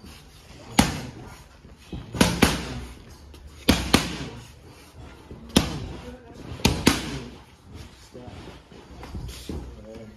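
Boxing gloves striking focus mitts in pad work: about eight sharp smacks, several landing in quick one-two pairs.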